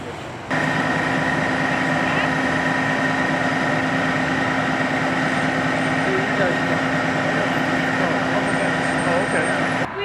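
Heavy emergency truck idling: a steady engine drone with a constant high whine over it.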